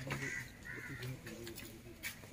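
A crow cawing, two short calls in the first second, over a faint low murmur.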